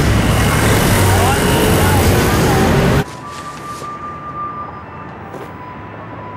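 Loud street din of traffic, with a low engine hum and a few voices calling out. It cuts off abruptly about three seconds in to quiet room tone with a faint steady high tone.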